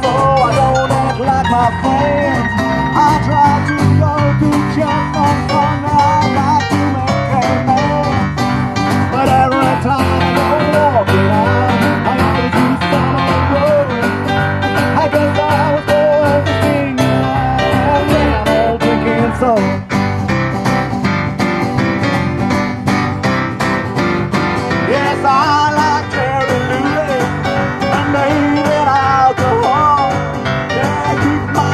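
Live band playing a bluesy rock and roll number with bass guitar, cajon and electric keyboard, steady and loud throughout.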